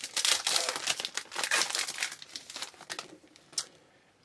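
A trading card pack's wrapper crinkling and tearing as it is pulled open by hand: a dense run of crackles that thins out about three seconds in.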